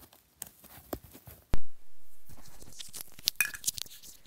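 Wired earbuds and their cord being handled close to the phone's microphone: scattered rustles and small clicks, with one loud sharp pop about a second and a half in that fades away slowly.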